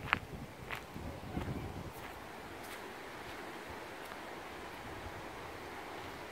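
Footsteps through dry fallen leaves, with a sharp crackle near the start and a few more in the first couple of seconds. After that comes a steady hiss of wind and rustling leaves.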